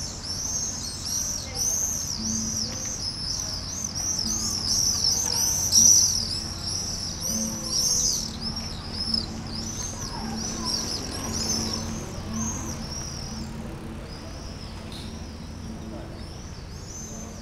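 A flock of birds calling: many short arching chirps overlapping without a break. They are loudest about six seconds in and thin out in the last few seconds.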